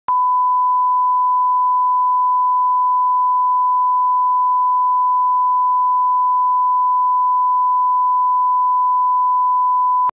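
Broadcast line-up test tone, the steady reference tone that goes with colour bars. It is one pure, unchanging beep held at the same pitch and loudness throughout, starting abruptly.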